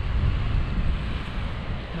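Wind buffeting the microphone of a selfie-stick camera on a tandem paramotor gliding in to land: a rushing, rumbling noise that eases slightly about halfway through.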